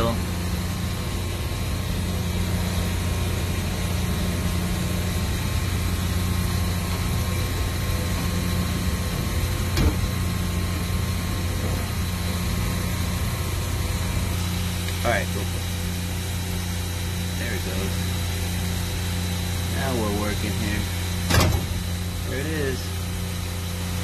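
Steady low hum of running machinery with a thin constant high whine, broken by a few sharp metallic knocks from work on the pump housing, the loudest about three seconds before the end.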